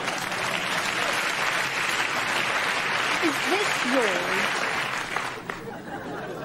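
Studio audience laughing, a dense wash of many voices that dies away about five and a half seconds in.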